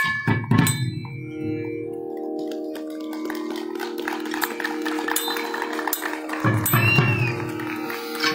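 Thavil drum strokes that fade out after about a second and a half, giving way to a held pitched note with several steady tones that sounds for about five seconds. The deep drum strokes start again near the end.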